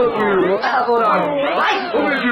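Voices warped by an edit effect that sweeps the whole pitch up and then down about once a second, giving a cat-like warble.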